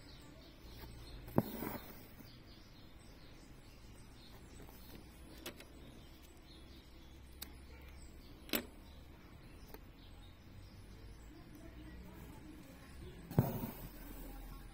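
Faint hand-embroidery sounds: a needle punching through stretched cotton canvas in a hoop and thread drawn through it. The two loudest are sharp knocks with a short rasp after them, about a second in and just before the end, with a few lighter ticks between.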